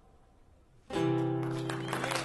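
A single final chord strummed on an acoustic guitar, coming in suddenly about a second in after a brief pause and left to ring out, ending the song. Audience clapping starts up beneath it near the end.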